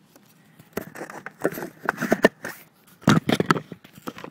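Irregular clattering knocks, clicks and scraping of hard plastic and PVC prop-gun parts being handled and pushed together, the loudest cluster of knocks a little after three seconds in.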